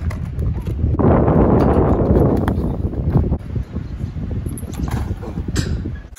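Wind rumbling on a phone microphone, with a louder rush of noise from about one to two and a half seconds in and a few short knocks later on.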